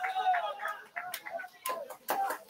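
Faint voices with a few short sharp clicks.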